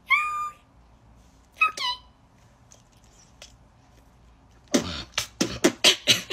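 A woman's voice making two short, high, squeaky meow-like calls, one at the start and a falling one about 1.6 s in. From about 4.7 s she beatboxes with a fast run of sharp percussive mouth sounds.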